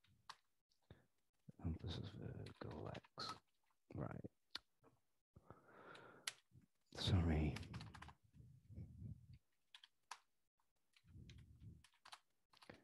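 Keystrokes on a computer keyboard in short runs of clicks, with low wordless vocal sounds from the typist in between, the loudest a brief pitched hum about seven seconds in.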